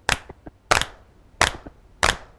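A recorded hand-clap sample played back from the keys of a Korg MicroSampler sampling keyboard. Three sharp claps come about two-thirds of a second apart, and a fourth lands at the very end.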